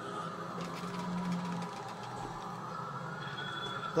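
Quiet, steady electronic drone with a low hum and a higher sustained tone that drifts slowly up and down. It is the ambient intro of a music video playing in the background.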